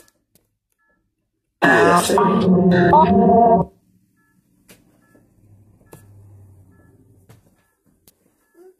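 A loud voice for about two seconds, starting a little over a second in, followed by a faint low hum and a few soft clicks. The hum comes as the Necrophonic ghost-box app starts running.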